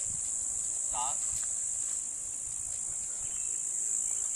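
Steady high-pitched drone of insects buzzing outdoors, with no break.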